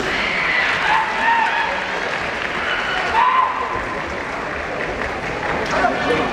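Spectators clapping steadily, with drawn-out shouted voices over it: the kiai shouts of kendo fencers in a bout.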